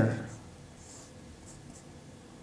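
Felt-tip marker writing on a white board, a few faint strokes about a second in.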